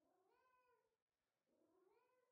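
Two faint meows from a house cat, each about half a second long with a rise and fall in pitch, the second coming about a second and a half in.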